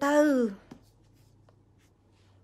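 A woman's voice holding one drawn-out syllable that falls in pitch for about half a second, then breaking off. After it there is only faint room tone with a low hum and a couple of small ticks.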